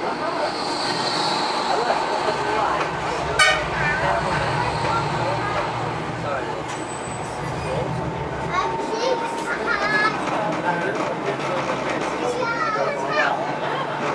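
Indistinct chatter of many passengers, children's voices among them, aboard a moving tram over its steady low running rumble, with one sharp clack about three and a half seconds in.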